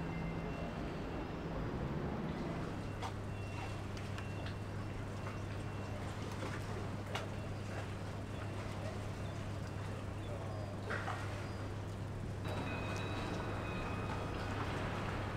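Steady low hum of a boat's engine, with scattered light clicks and knocks over it.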